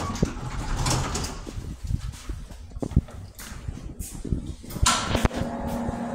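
Elevator car doors sliding open with a rumbling rattle, followed by sharp knocks and footsteps. A steady low hum comes in near the end.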